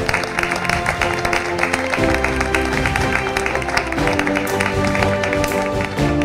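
Audience applauding, with closing music of held notes that change every second or two playing over the clapping.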